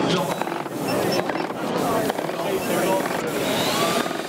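Wagner SprayPack 18V cordless airless paint sprayer spraying paint onto a board: a steady hiss of paint atomising at the spray gun tip, with the backpack pump running really quiet. Crowd chatter runs behind it.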